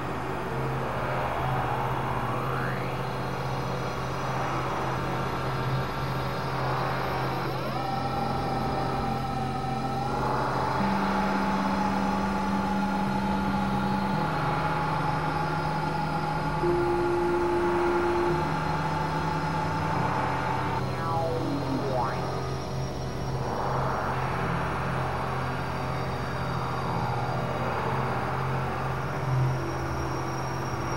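Experimental synthesizer drone music from a Novation Supernova II and Korg microKORG XL. A steady low drone runs under a held higher tone that slides in about eight seconds in and drops away in a falling glide just after twenty seconds, while a few lower held notes step in pitch in between.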